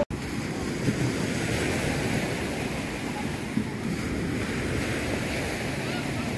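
Steady rush of sea surf on the shore, with wind buffeting the microphone.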